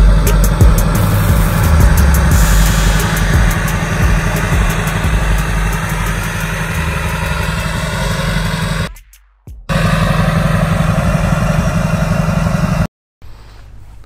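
Duramax turbodiesel pickup idling, its exhaust rumbling steadily out of a large custom exhaust tip, with background music over it. The sound drops out for about a second partway through and stops shortly before the end.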